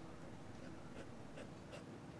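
Felt-tip marker drawing short strokes on sketch paper, faint, with a few soft scratches in the second half.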